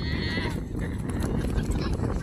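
Wind rumbling on the microphone, with a voice trailing off in the first half second and faint voices later on.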